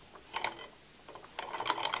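Hand-spun saw-blade magnet rotor of a homemade axial flux alternator turning on a threaded-rod shaft that has no proper bearings, making a scatter of irregular light clicks and rattles.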